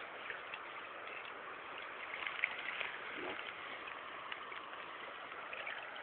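Steady rush of shallow river current flowing over gravel, with a few faint clicks.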